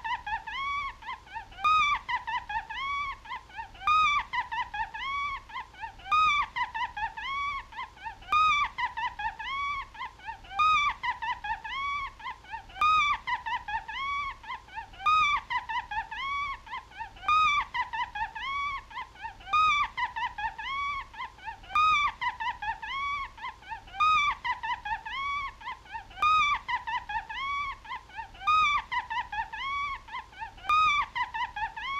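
High-pitched cartoon mouse laughing: a quick run of short rising-and-falling squeals. The same laugh repeats as a loop about every two seconds.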